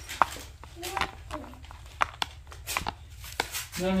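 Several sharp clicks and taps from metal-framed sunglasses being handled over their open hard-shell case, the sharpest about a quarter second in.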